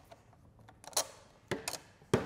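A few sharp plastic-and-metal clicks as banana-plug power leads are pulled off the terminal posts and handled: one click about a second in, then two or three more shortly after.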